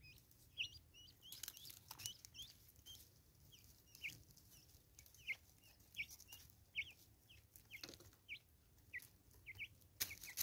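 Natal spurfowl giving short, faint clucking notes, about two a second, as they feed together on seed, with scattered light taps of beaks pecking.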